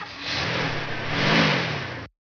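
Car engine sound effect of a car driving up. The engine pitch rises and then falls about a second and a half in, and the sound cuts off suddenly at the end.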